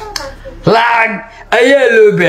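A man's voice in two short phrases, after a single sharp click just after the start.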